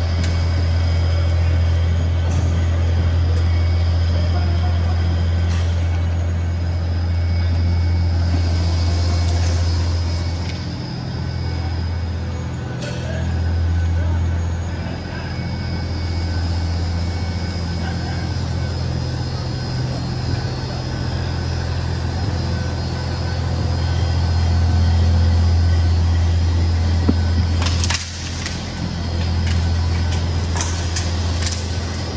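Industrial rubber tyre-cord fabric shredder and its conveyor running, a steady low machine hum with a few fainter steady tones above it. The hum dips briefly twice around the middle, and there is a sharp knock near the end.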